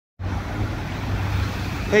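Steady rumble of city street traffic with a hiss over it, starting a moment in; a man's voice begins right at the end.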